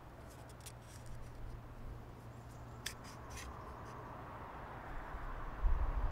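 Small wooden puzzle pieces being slid apart and handled, giving faint rubbing and clicking, with a couple of sharper wooden clicks about three seconds in. A low rumble comes in near the end.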